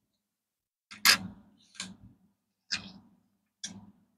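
Four sharp clicks about a second apart, the first loudest, each with a short metallic ring: pennies clicking against each other and the surface as they are handled and swapped.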